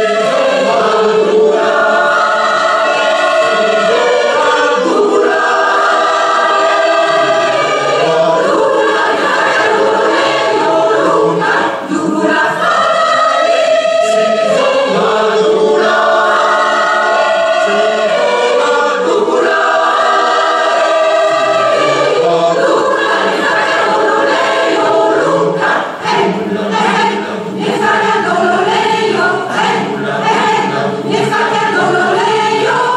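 Large mixed choir singing in harmony, in repeated phrases of a few seconds each.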